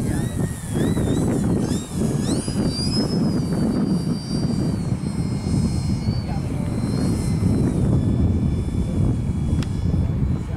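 Radio-controlled model airplane flying overhead, its motor and propeller whine rising and falling in pitch as the throttle changes, over steady wind rumble on the microphone.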